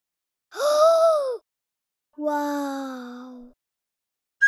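Two wordless vocal exclamations with silence between them. The first is a short, high sound that rises and falls. The second is a lower, longer one that slides slowly down in pitch.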